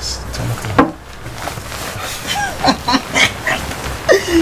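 A single sharp click about a second in, then a few brief, soft voice sounds from a couple in bed.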